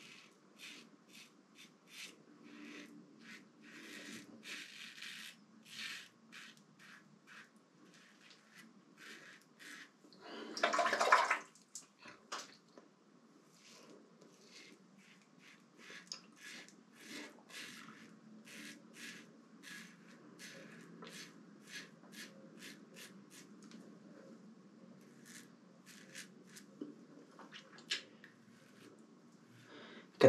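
Razorock SS Lupo stainless double-edge safety razor with a Gillette 7 O'Clock Super Platinum blade scraping through lathered beard stubble in many short strokes, each a faint, crisp rasp, the razor gliding easily. A louder rush of noise lasting about a second comes about ten seconds in.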